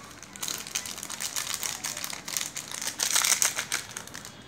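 A small plastic Cadbury Gems sweet packet crinkling as it is handled and torn open: a dense run of crackles, loudest about three seconds in.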